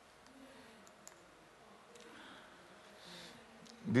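Quiet room tone in a pause, with one faint click about a second in.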